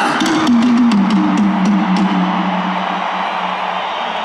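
Live rock band playing between songs in a stadium: a held low note slides down and then sustains, with a few sharp cymbal-like hits in the first two seconds, over the noise of a large crowd.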